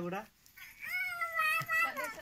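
A high-pitched cry, held for about a second and wavering slightly in pitch.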